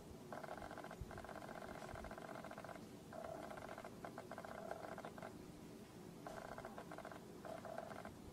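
Faint, muffled crying: a man whimpering in several short stretches, broken by brief pauses.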